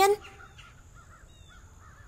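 Faint bird calls: a run of short, soft calls, one with a brief falling note.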